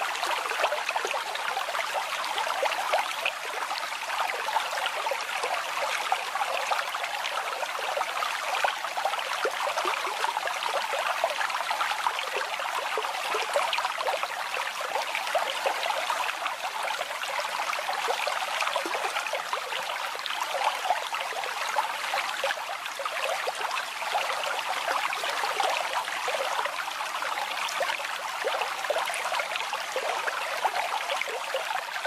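Babbling brook: running water splashing and trickling steadily, light and without any deep rumble.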